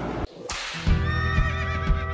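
A short whoosh, then a horse whinny sound effect about a second in, over the start of music with held chords and sharp percussion hits.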